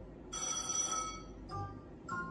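Merkur Fruitinator Plus slot machine's electronic win signal: a bright, bell-like ringing tone for about a second, then a short chime, as a line of watermelons pays out.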